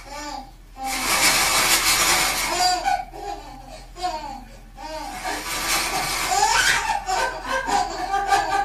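A baby laughing in long fits, with short pauses about three and nearly five seconds in.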